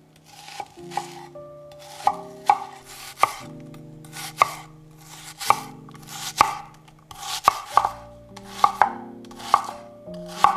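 Chef's knife cutting through a red onion on an end-grain wooden cutting board: about a dozen unhurried cuts, each a crisp crunch through the onion ending in a knock of the blade on the board.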